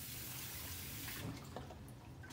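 Kitchen tap running into a sink: a steady hiss of water that drops off about a second in, followed by a few light clicks of dishes.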